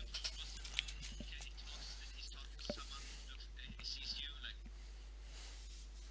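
Faint whispering and breath noise picked up by headset microphones over a voice-chat line, with a few small scattered clicks and a steady low hum.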